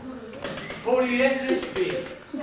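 A man's voice with long, drawn-out vowels, starting about half a second in: stage dialogue or a called-out line from an actor.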